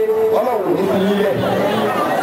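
Speech only: a man speaking into a microphone.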